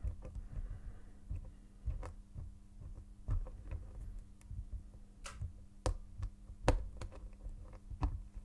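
Hook pick and tension wrench single pin picking a small brass Yale pin-tumbler padlock: faint, irregular metallic clicks and taps as the pins are lifted and set, with a few sharper clicks scattered through.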